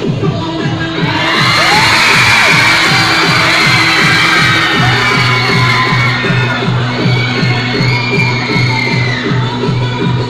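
Dance music with a steady electronic beat plays for a cheerdance routine. About a second in, a crowd starts cheering and shouting shrilly over it, loudest through the middle and easing off in the later seconds.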